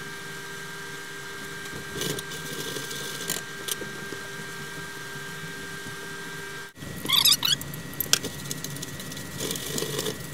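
Clams simmering in a steaming stainless steel pan over a steady hum. After a break about two-thirds of the way in, a metal utensil clinks and scrapes against the pan several times.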